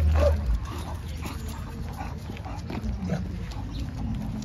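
Faint, short snuffling sounds from a young pocket American Bully on a leash.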